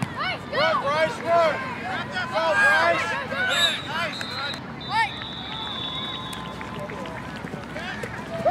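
Many overlapping high-pitched shouts and calls from children and adults on a sports field, loudest in the first five seconds. A steady high tone sounds for about two seconds around the middle.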